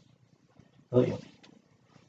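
A short voiced sound from a person about a second in, a brief word or grunt, with quiet room tone around it.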